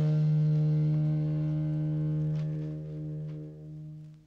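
Background score: a brassy jazz music cue ends on one long held low note, which fades away near the end.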